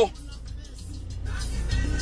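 Low vehicle rumble, heard from inside a car, growing steadily louder over about two seconds.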